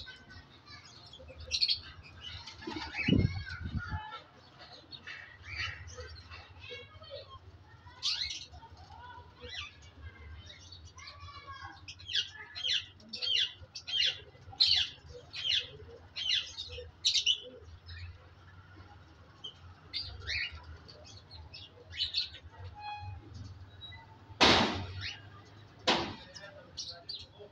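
Pigeons moving about a loft, with bursts of wing flapping as they fly up and land on a perch, over many short, high bird chirps throughout. A low thud comes about three seconds in, and a single sharp, loud knock near the end.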